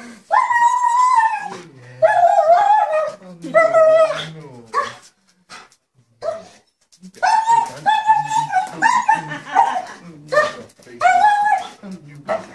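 German Shepherd whining and crying in excited greeting: high-pitched drawn-out cries, some held about a second, coming in clusters with a short lull in the middle.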